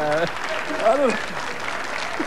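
Studio audience applauding after a punchline, with a man's voice laughing briefly over it.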